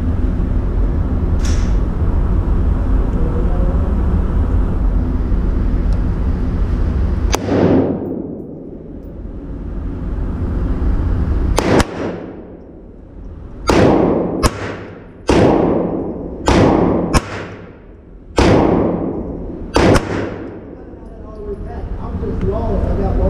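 A Ruger Mark IV Tactical .22 LR pistol fired about ten times at an indoor range, each shot sharp with a reverberating tail. There is one shot about seven seconds in, then an irregular string of shots roughly half a second to two seconds apart over the last ten seconds. A steady low rumble fills the start, before the first shot.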